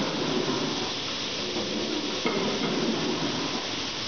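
Steel-drum dedenting machine running its cycle: a steady hiss of compressed air being fed into the clamped barrel to push the dents out, over an uneven lower rumble of the machine.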